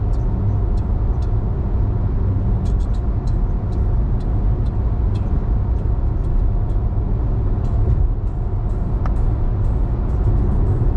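Steady road noise of a car cruising at freeway speed, heard from inside the cabin: a low rumble of tyres and engine, with faint light ticks scattered through it.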